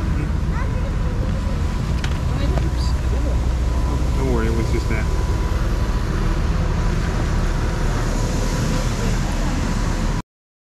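Steady rumble of road traffic, with a brief pitched sound about four seconds in.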